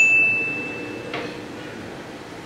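A single high electronic ding, a pure tone that starts with a brief higher blip, holds one pitch and fades out after about a second. It is a sound effect laid in with an on-screen caption.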